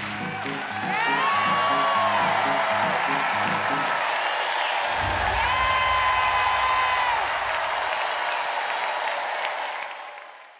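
Studio audience applauding and cheering over the closing bars of the band's music. A deep rumble enters about halfway, and everything fades out at the end.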